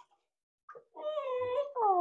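Labrador retriever puppy crying during its bath. A brief yelp comes about two-thirds of a second in, then a held whine, then a long cry that falls in pitch, starting near the end. It is the puppy voicing its complaint at being bathed.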